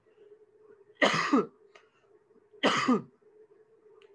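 A man coughing twice, two short coughs about a second and a half apart.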